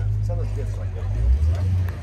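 A car engine running near the microphone, a low steady rumble whose pitch shifts about two-thirds of the way through, with faint voices of people nearby.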